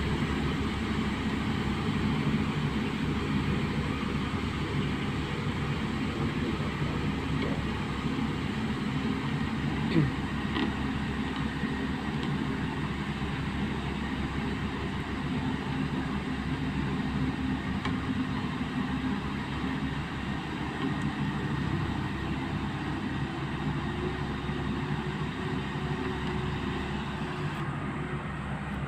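A vehicle engine running steadily at an even speed as it drives along a road, with road and wind noise. There is one short knock about ten seconds in.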